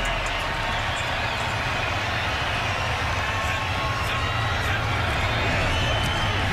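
Steady crowd noise from a football stadium's stands: a continuous roar of many voices with no single sound standing out.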